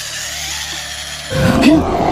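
Horror film soundtrack: a steady hiss, then about two-thirds of the way in a sudden loud, low, voice-like cry whose pitch wavers up and down, like a creature's growl.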